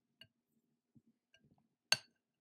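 A wire whisk clinking against a glass bowl while stirring watery slime: two light clinks, then one much louder clink near the end, with faint stirring sounds in between.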